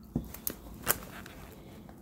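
A handbag being handled and searched for a brand label: light rustling with three short, sharp clicks in the first second, the last the loudest.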